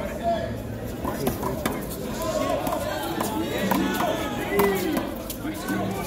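A rubber handball slapped by hand and smacking off a concrete wall and floor during a rally, a string of short, sharp impacts at irregular intervals, with sneakers on the court and players' voices around them.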